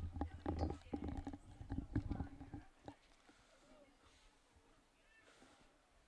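A quick run of irregular knocks and thumps over a steady low hum, stopping about two and a half seconds in and leaving only faint background.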